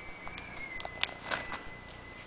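Plastic binder sleeve pages being turned by hand: a few short crackles and clicks about a second in, over a faint steady high-pitched tone.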